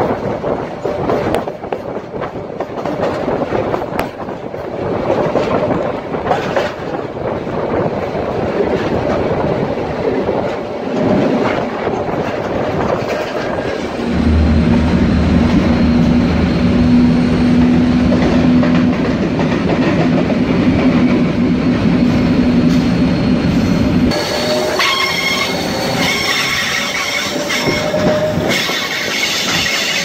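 Supervia Série 500 electric multiple-unit train running, its wheels clicking over rail joints. About halfway through a steady low hum sets in inside the car and lasts about ten seconds. Near the end the wheels squeal in several high tones as the train takes curving track.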